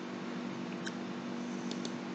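Steady low hum with faint clicks of a computer mouse, one about a second in and two close together near the end, as pages of an on-screen book are clicked and scrolled.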